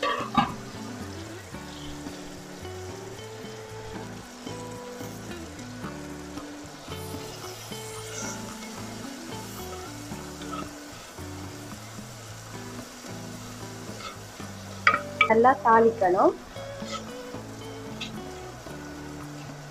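Sliced onions and tomatoes frying in hot oil in a clay pot: a steady sizzle, with a wooden spatula stirring the vegetables against the clay. A short burst at the very start as the vegetables drop into the oil.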